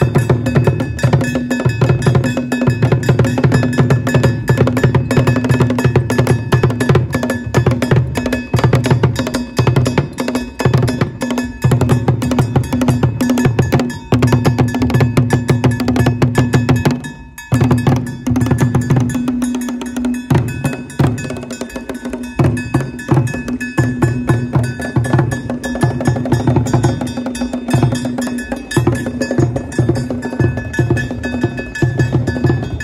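Drums and other percussion playing a fast, dense rhythm, with a ringing tone held under the strokes. The playing breaks off briefly about seventeen seconds in.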